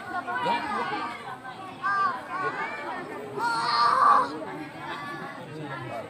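Audience chatter, with many people and children talking over one another in a pause of the Qur'an recitation. A louder, high-pitched voice rises above the murmur about three and a half seconds in.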